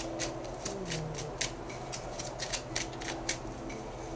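Tarot cards being shuffled by hand: an irregular run of short papery snaps and slaps, about four a second.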